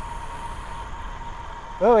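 Distant cicadas droning as one steady, even tone, over the low rumble of wind and tyres on smooth pavement from a moving road bike.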